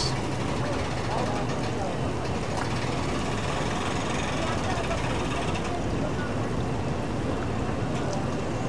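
Boat outboard engine running slowly at idle, a steady low hum, as a rigid inflatable boat moves at low speed; voices talk faintly over it.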